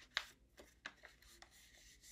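A sheet of paper being folded in half and creased by hand: a few faint, short crackles, then a soft rustle near the end.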